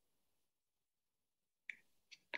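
Near silence, with one short click near the end.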